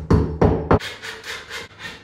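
A claw hammer knocking plastic wall plugs into drilled holes in a brick wall. Three sharp strikes come in the first second, then lighter, quicker taps.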